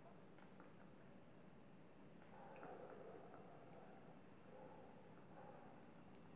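Near silence: a marker pen writing on paper, faint scratching, over a faint, steady high-pitched tone.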